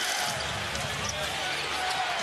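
A basketball being dribbled on a hardwood arena court, over a steady crowd murmur.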